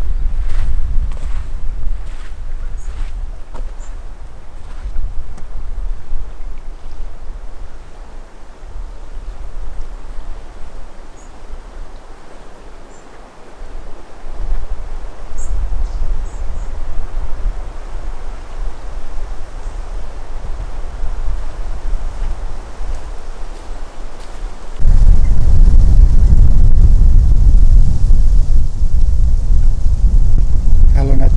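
Wind buffeting the microphone, a low rumble that gusts and eases, then turns abruptly louder and steadier about 25 seconds in.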